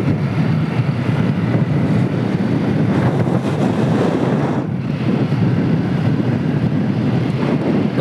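Hero Splendor motorcycle riding at steady speed: a constant rush of wind on the microphone, with the bike's single-cylinder four-stroke engine running beneath it.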